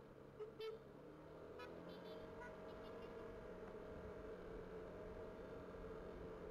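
Faint, steady hum of a motor scooter's engine under way, with two brief high toots about half a second in and weaker short ones around two seconds in.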